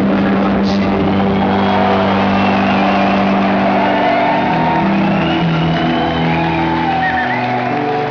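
An electronic rock band's held chords drone on while crowd members whoop and shout over them; the lowest notes drop away about seven seconds in. The sound comes through a compact digital camera's built-in microphone.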